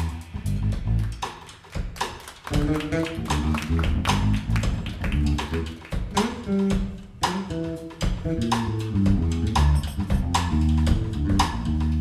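Live jazz: an electric bass guitar plays a moving line over a drum kit, with sharp drum and cymbal hits throughout. After a brief drop about two seconds in, the bass comes back in strongly.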